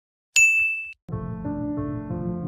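A single bright notification-bell ding sound effect about a third of a second in, ringing for about half a second before it stops. Just after a second in, soft piano music begins and carries on.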